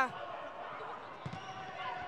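Steady crowd noise in an indoor volleyball arena, with a few short knocks of the ball being played during a rally.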